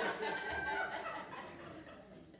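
Laughter from several people in a room, fading away over the two seconds.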